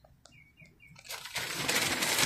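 A few faint bird chirps in a lull, then from about a second in a rising rush of breeze through the trees that stays loud to the end.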